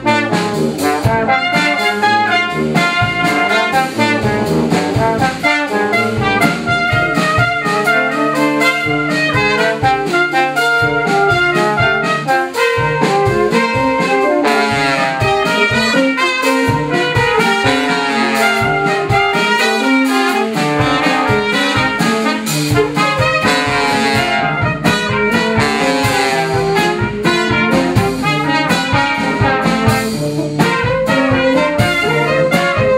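Live brass ensemble of two trumpets, French horn, trombone and tuba with drum kit, playing busy passages of short, interlocking notes over a steady drum beat.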